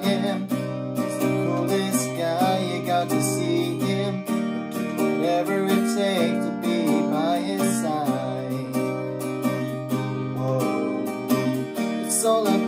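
Acoustic guitar strummed along with a backing track, with a man singing over it in phrases that come and go.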